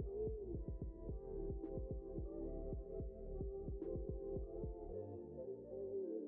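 Background music: sustained tones over a fast, steady low beat that drops out about five seconds in.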